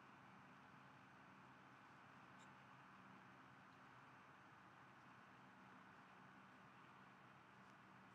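Near silence: faint steady room tone, a low hum and hiss with no distinct events.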